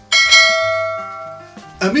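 Subscribe-button notification bell sound effect: a single bell strike, a bright cluster of steady ringing tones that fades away over about a second and a half.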